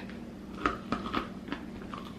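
A lid being screwed onto a smoothie container: a few light clicks and knocks as it is turned and tightened.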